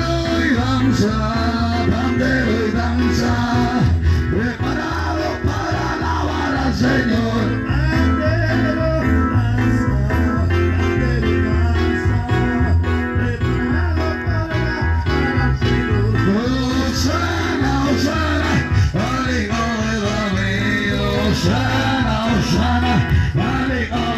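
Amplified praise music through a portable speaker: a man singing into a microphone over backing music with a steady, repeating bass line.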